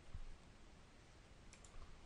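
Near silence with a few faint computer mouse clicks, most of them near the end.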